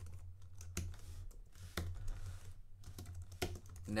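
Typing on a computer keyboard: irregular key clicks, some single and some in quick runs, with a few louder strokes.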